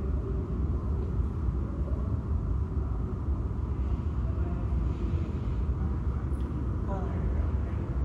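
Steady low background rumble of room noise with no distinct events. A quiet voice begins near the end.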